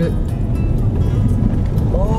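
Steady low rumble of a car's engine and tyres heard from inside the cabin as it drives slowly, with background music playing over it.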